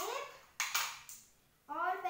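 A boy's voice in short vocal sounds, with a sudden sharp noise about half a second in and a quiet gap before he starts speaking again near the end.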